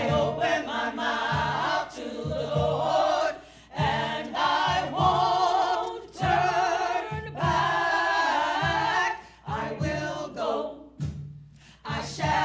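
Church choir of men and women singing a gospel song, phrase after phrase with short breaks between, the phrases growing shorter near the end.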